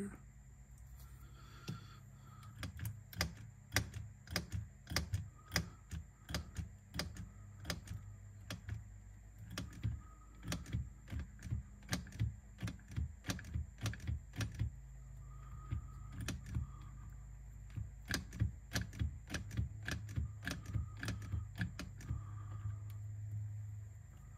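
Irregular small mechanical clicks and clacks, a few a second, as the Revox B710 tape transport's freshly oiled solenoid plunger and its linkage are worked back and forth by hand. The movement still isn't right: the mechanism is judged not to work properly.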